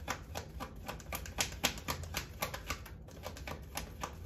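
A deck of tarot cards being shuffled in the hands: a quick, uneven run of light clicks and flicks as the cards slide against each other.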